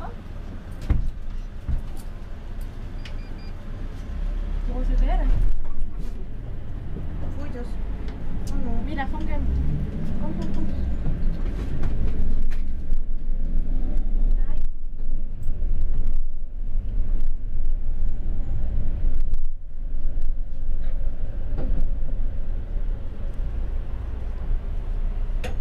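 City bus heard from inside the passenger cabin, setting off from a stop and driving: a low engine and road rumble that grows louder about four seconds in and stays strong through the rest. Passengers' voices can be heard underneath for a while after it starts to pull away.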